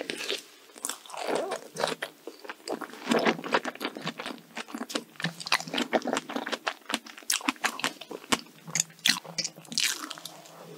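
Close-miked mouth sounds of a person chewing strawberry cream cake: many short, irregular clicks and smacks, with a louder bite near the end.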